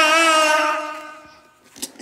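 A baby's long, drawn-out wavering cry-like 'aaah', vocalising into a toy microphone, fading away about a second and a half in; a small click or two near the end.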